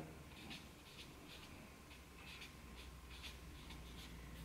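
Black pen scratching on paper in a string of short, quick strokes, about two to three a second, drawing rows of small overlapping scale shapes. Faint.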